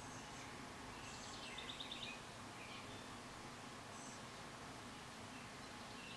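Quiet room tone with faint bird chirps: a short rapid trill about one and a half seconds in and a brief call near four seconds.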